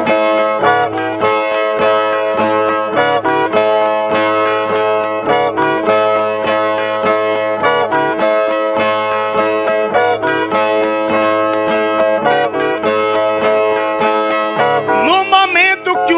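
Brazilian ten-string violas (viola nordestina) played in a steady plucked instrumental interlude between sung stanzas of a repente. A man's singing voice comes in near the end.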